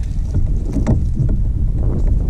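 Wind rumbling on the microphone aboard a kayak on open water, with a few short knocks and splashes about a second in as a landing net holding a freshly caught fish is handled at the surface.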